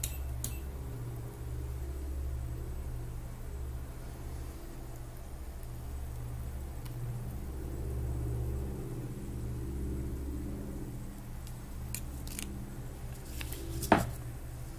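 Steady low hum with a few sharp clicks of alligator-clip test leads being handled, the loudest near the end.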